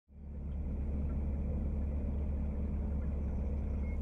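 A narrowboat's engine running steadily while the boat cruises along the canal, heard as a constant low rumble. It fades in over the first half second.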